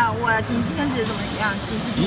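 Compressed air hissing from the pneumatic heat press's air cylinder as it vents during a press cycle, starting suddenly about a second in and lasting about a second.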